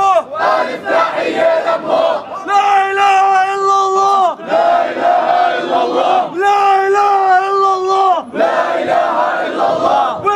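A group of youths chanting in unison, with long drawn-out shouted calls of about a second and a half each, separated by shorter, more ragged shouting.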